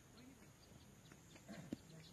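Near silence: faint open-air ambience with distant murmuring voices, and one sharp click near the end.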